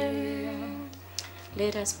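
A woman's singing voice holding the last long note of a song, fading out within the first second. A short spoken phrase follows near the end, over a faint steady low hum.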